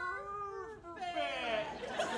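A performer's voice holding a long, wordless sung note that ends just under a second in, followed by a second, shorter note that slides down in pitch.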